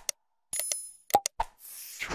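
Sound effects of a like/subscribe/bell button animation: a click, a bright bell-like ding, two quick pops, then a whoosh near the end as the animation clears.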